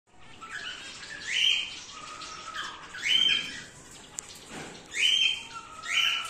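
Cockatiels calling in an aviary: four loud calls with a rising start, about two seconds apart, over quieter chirping from the other birds.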